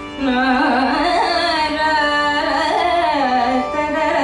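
Female voice singing a Carnatic alapana in raga Todi, with a violin following. A new phrase starts just after the beginning and glides and wavers up and down in heavy ornaments, over a steady drone.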